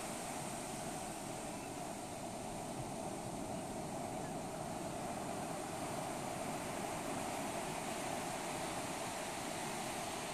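Ocean surf breaking and washing up the beach: a steady rush of waves.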